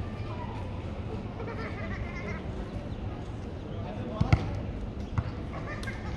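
Street ambience: a low steady hum of traffic with voices of passers-by, broken by two quick sharp thumps about four seconds in and another a second later.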